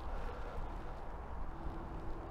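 Quiet outdoor background with a steady low rumble and no distinct event; a faint steady hum comes in about one and a half seconds in.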